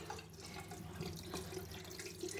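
Bathroom tap running faintly into a sink, with a few light clicks.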